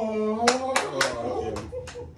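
About five sharp hand claps in an irregular burst, over a man's drawn-out excited vocal exclamation.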